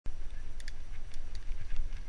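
Wind rumbling on a helmet-mounted GoPro microphone as a mountain bike rides fast down dirt singletrack, with a few sharp clicks and rattles from the bike and tyres on the trail.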